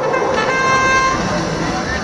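A short electronic horn tone with a single steady pitch starts about half a second in and lasts under a second, over crowd noise. It is the match signal marking the start of the driver-control period.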